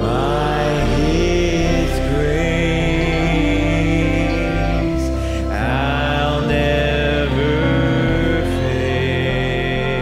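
A man singing a slow hymn in long held notes, sliding up into a new phrase at the start and again about halfway, over a sustained instrumental accompaniment.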